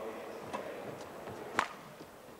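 Badminton racket strikes on a shuttlecock during a rally: a few sharp hits, the loudest about a second and a half in.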